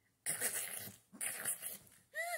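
A woman's voice imitating an animal fight, snarling and hissing in two rough, breathy bursts of under a second each.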